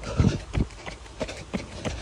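A runner's footfalls on the road during a fast tempo run: two heavy thuds about a third of a second apart near the start, then fainter steps.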